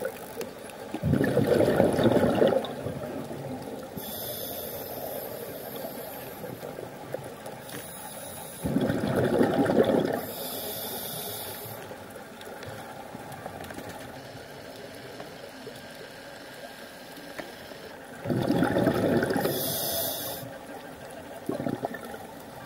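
Scuba diver breathing through a regulator underwater: three bubbling exhalations, each lasting a second or two, about nine seconds apart, with a high hiss of inhalation between them.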